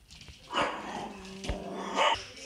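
A pet dog barking twice, once about half a second in and again near the end.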